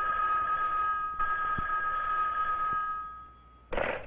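Cartoon telephone ring sound effect: one long, steady two-tone ring that fades out a little after three seconds in.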